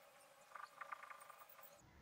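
Near silence, with a few faint short squeaks of a marker pen writing on paper about half a second to a second and a half in.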